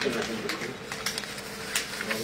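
Faint voices in the room with several short, sharp light clicks.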